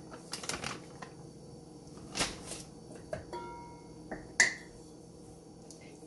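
Handling a bag of powdered sugar and a metal mixing bowl: a few short rustles as the sugar is poured, a brief ringing tone from the bowl a little after three seconds in, and a sharp clink about four and a half seconds in, the loudest sound.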